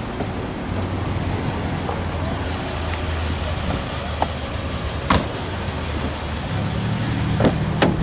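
A 2008 Hyundai Entourage minivan's V6 engine idling as a steady low hum under an even hiss, with a sharp click about five seconds in and a couple more clicks near the end as the driver's door is opened.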